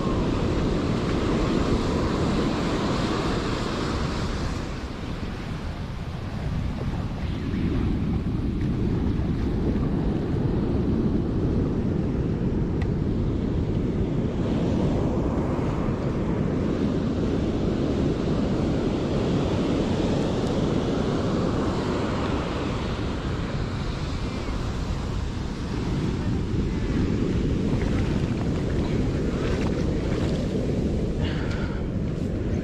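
Ocean surf breaking and washing up a sand beach, mixed with heavy wind rumbling on the microphone. The noise is steady and eases briefly twice.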